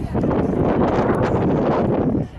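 Wind buffeting the microphone: a loud, steady rumble.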